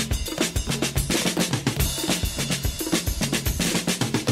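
Instrumental opening of an Armenian pop song: a drum kit with bass drum and snare plays a quick, steady rhythm over low held bass notes.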